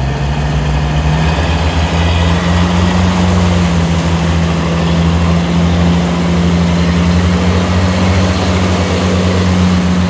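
Jeep Cherokee engine revving up about a second in and then held at steady high revs under load, as the Jeep is pulled out of deep mud on a tow strap.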